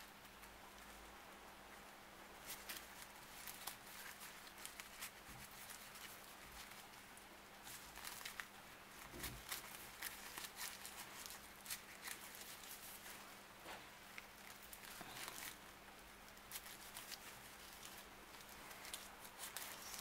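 Paper yarn crackling and rustling in faint, irregular little clicks as it is drawn through the stitches with a large crochet hook while single crochet is worked.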